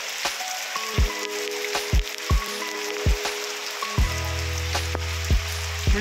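Background music with held notes and a beat of drum hits, a deep bass line coming in about four seconds in, over the steady hiss of rain falling.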